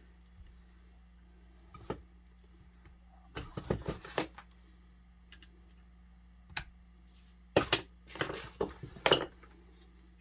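Hand tools clinking and tapping against a Homelite XL-76 chainsaw during a teardown: a sharp click about two seconds in, a short cluster around four seconds, another single click, and the loudest run of metal clinks near the end.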